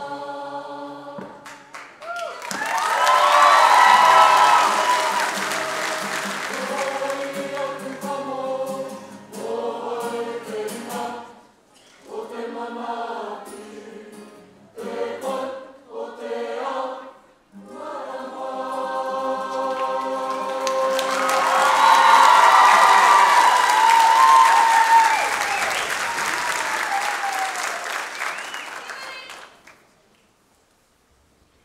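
Kapa haka group of mixed voices singing a Māori waiata in unison with held, sustained notes, swelling loudest twice. Audience applause rises over the singing during those two loud stretches, and the singing stops at the very end.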